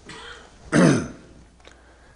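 A man clearing his throat once, short and loud, about a second in.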